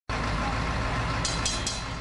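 Engine of a parked rubber-tyred trolley bus idling: a steady low rumble, with two brief hisses a little after a second in.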